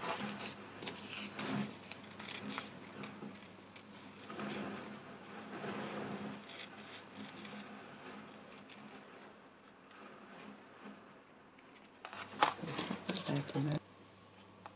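Scissors cutting small shapes out of fabric backed with fusible web, faint snips with soft rustling of the backing paper.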